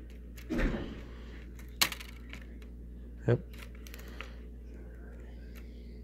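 DVD discs being handled in a clear plastic multi-disc case: a short rustle, then one sharp plastic click about two seconds in, and a few faint ticks later.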